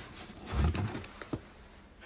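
Faint handling of parts inside a cardboard box, with a soft bump a little after half a second in and a short click just past the middle.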